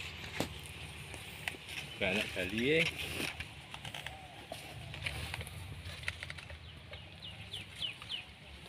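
A chicken calling once, a short wavering call about two seconds in. A few quick high bird chirps come near the end, over a faint steady low hum.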